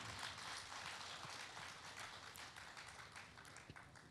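Faint audience applause, a haze of many hands clapping that dies away over the few seconds.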